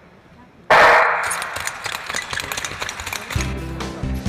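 A sudden loud bang about a second in, ringing out in a large hall, followed by a run of sharp clicks. Background music with steady low notes comes in near the end.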